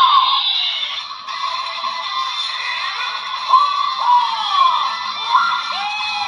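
DX Gotcha Igniter toy transformation device playing its electronic transformation audio through its small speaker: music with several swooping, sliding synthesized tones and voice-like calls. The sound is thin and tinny, with no bass.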